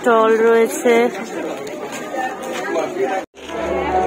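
A person's voice close by, then the chatter of a crowd of voices. About three seconds in the sound cuts out for a moment, and a low steady hum comes in under the chatter.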